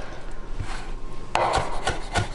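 Chef's knife chopping and scraping garlic cloves on a wooden cutting board: a rasping scrape, then a few separate knife strikes against the board, the loudest about a second and a half in.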